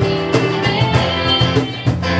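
Live band music driven by a strummed guitar over a steady bass line, with held melody notes above it.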